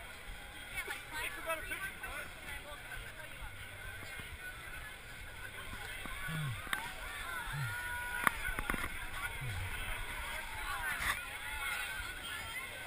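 A crowd of spectators chattering and calling out over one another, with water sloshing around people standing in a shallow lake. A couple of short sharp knocks cut through about two-thirds of the way in.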